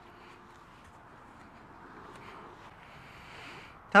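Quiet outdoor background: a faint steady hiss with a few soft clicks, growing a little louder near the end.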